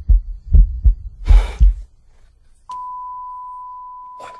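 Heartbeat sound effect as heard through a stethoscope: heavy low thumps in lub-dub pairs, with a brief hiss among them, stopping about two seconds in. Then a single long steady high beep starts, like a heart monitor's flatline tone.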